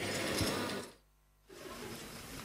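Faint background noise with a low hum, cutting out to dead silence for about half a second midway, then returning faintly.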